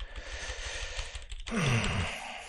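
A person's long breath in, then, about one and a half seconds in, a short voiced sigh that falls in pitch.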